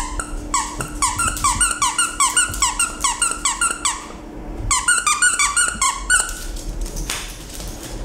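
Squeaker inside a plush dog toy squeezed over and over: a quick run of short falling-pitch squeaks, about three a second, then a brief pause and a few more.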